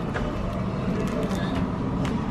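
Steady low rumble of a busy store, with indistinct voices in the background.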